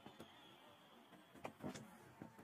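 Near silence: faint broadcast background with a few faint short clicks about a second and a half in.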